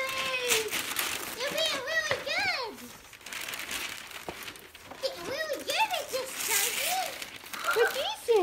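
Tissue paper and wrapping paper rustling and crinkling as gifts are pulled from a bag, with a young child's short high-pitched vocal sounds about two seconds in and again from about five to seven seconds.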